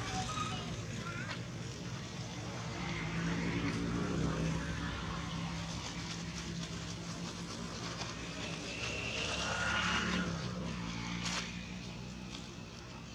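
A motor engine running with a steady low hum that swells and fades a little, and a few faint high chirps over it.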